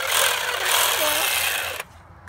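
Handheld power saw running with a loud, steady buzz, switched off abruptly near the end.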